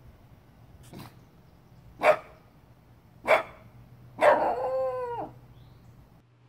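A dog barks twice, short barks a little over a second apart, then gives one longer drawn-out call of about a second that drops in pitch at its end.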